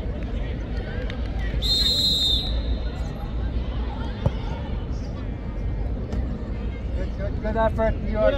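A referee's whistle blown once, briefly, about two seconds in, then a football kicked hard with a single sharp thud about four seconds in, over a steady low rumble and spectators' voices that rise near the end.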